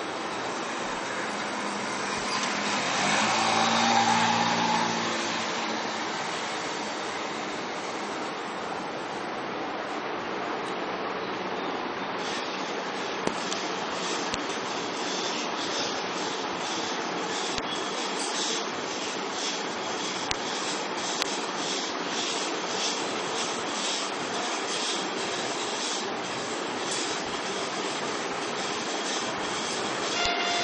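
Ceiling-mounted pulley clothes-drying rack being lowered on its cord, the steel scissor arms and cord through the pulleys making a repeated rasping from about twelve seconds in, over a steady hiss. A louder swell with a low hum comes a few seconds in.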